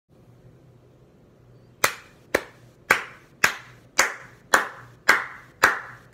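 Hand claps keeping a steady beat, about two a second, starting about two seconds in; eight claps in all.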